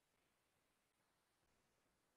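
Near silence: faint steady hiss of an idle microphone line.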